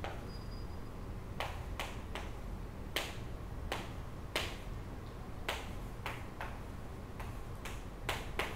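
Chalk tapping on a chalkboard as numbers are written: about a dozen short, sharp taps at irregular intervals over a steady low room hum.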